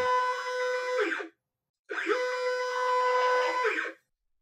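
Stepper motor on a micro-stepping drive, microstepped 16x, moving a belt-driven linear stage at low speed: a steady whine with a clear tone and many overtones. The whine rises in pitch as each move starts and falls as it stops. It comes in two moves with about half a second of silence between them. At this low speed the stepper is pretty noisy despite the microstepping.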